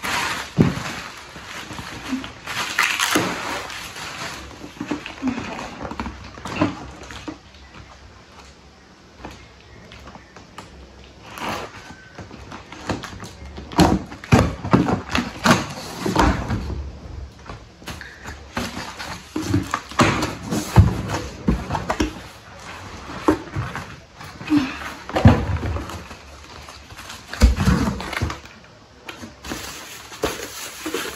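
A parcel being opened by hand: irregular rustling and tearing of packaging, with scattered knocks and clatters as things are handled.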